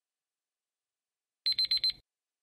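Countdown timer's alarm sound effect: four rapid high-pitched beeps about a second and a half in, signalling that the time to answer is up.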